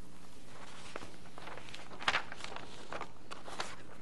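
A scatter of light knocks and clicks, irregularly spaced, the sharpest about two seconds in, over a steady low electrical hum.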